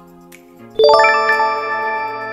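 A bright ding-style chime sound effect about three-quarters of a second in, ringing on and slowly fading, marking an answer popping up on screen. Soft background music plays under it.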